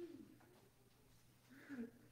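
Near silence broken by two faint, low murmurs of a person's voice, one at the start and one near the end.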